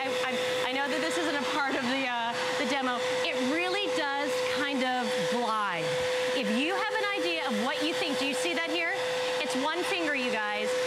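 Bissell PowerGlide Lift-Off Pet upright vacuum running with a steady high motor whine as it is pushed across a hard floor, sucking up scattered debris.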